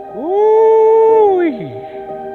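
A single long drawn-out vocal call, rising in pitch, held for about a second, then sliding down and stopping.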